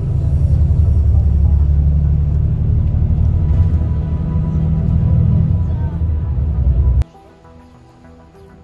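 Low rumble of a moving tour bus's engine and road noise heard inside the cabin, cutting off suddenly about seven seconds in. Quieter background music follows.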